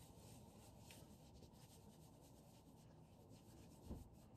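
Near silence, with faint soft rubbing as hands work styling foam through wet curly hair.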